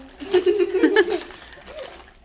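Foil potato-chip bags crinkling and rustling as they are torn open and rummaged in, loudest for about a second near the start, with a brief low voice over it.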